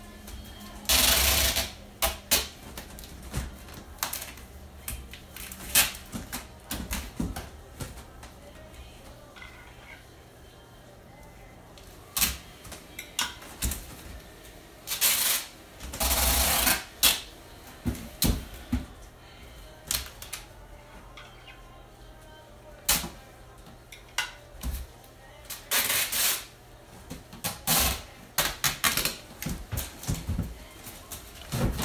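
Large cardboard box being folded and taped: irregular knocks and taps of the cardboard flaps, with a few longer rasping bursts of about a second each.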